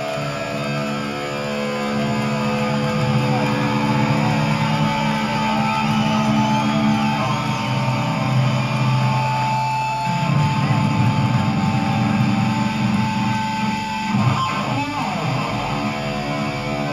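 Heavy metal band playing live: distorted electric guitars and bass holding long sustained chords, with a couple of chord changes partway through.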